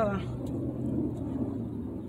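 A man's voice finishing a word right at the start, then a steady low outdoor rumble with a constant hum underneath, easing off near the end.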